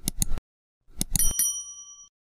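Subscribe-button animation sound effects: two quick mouse clicks, then a few more clicks about a second in, followed by a bright bell ding that rings on and fades.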